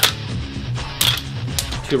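Sharp plastic-and-metal clicks of a magazine being seated in and pulled out of a MilSig CQB magfed paintball marker, the loudest about a second in, over background music with guitar.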